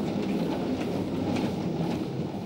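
Steady rumble and rattle of a hospital bed's wheels and frame as it is pushed along a corridor.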